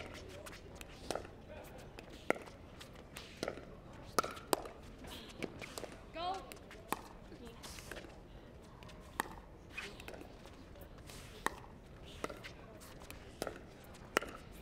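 Pickleball paddles striking a hard plastic ball in a dinking exchange at the net: single sharp pops about once a second, irregularly spaced, some closer together.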